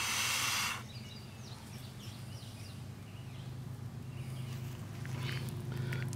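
A long breath blown into a smoking tinder bundle to coax its ember into flame, a steady hiss lasting about a second, followed by a quiet background with faint high chirps.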